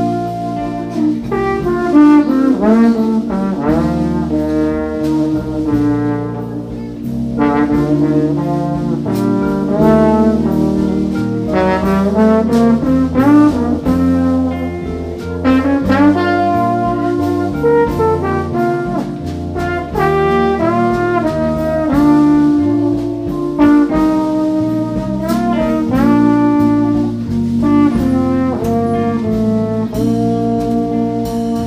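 Live jazz band playing an instrumental tune, a trombone carrying a melodic line over electric bass, drums, guitar, keyboard and accordion.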